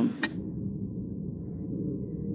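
Steady low background murmur and room noise of a large legislative chamber, with one short sharp click just after the start.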